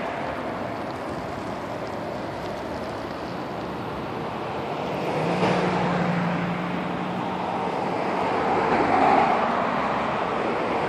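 Cars, vans and pickup trucks driving past close by on a highway: a continuous rush of tyre and engine noise that swells as vehicles go by, about halfway through and again near the end. A low steady hum joins about halfway through and fades out near the end.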